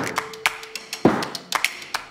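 About five light taps and clicks from hands handling things on a tabletop, the loudest about a second in, as a hand moves to a box of plastic-wrapped clay packets. A held music note fades out in the first half.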